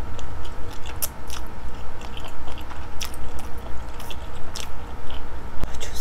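Close-miked chewing of a mouthful of spicy instant noodles, with irregular wet mouth clicks and smacks.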